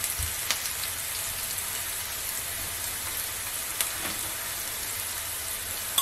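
Sliced onions and ground spices sizzling steadily in hot oil in a nonstick frying pan, with a few faint ticks.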